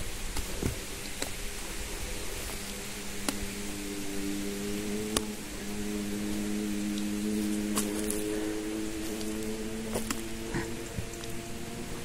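Soft background music of slow, sustained chords, with faint scattered clicks and rustles of footsteps on the forest floor.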